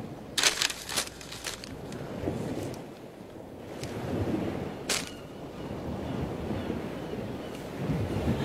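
Sheets of handwritten letter paper rustling as the pages are flipped over, with a flurry of crisp crackles in the first second and a half and one more about five seconds in.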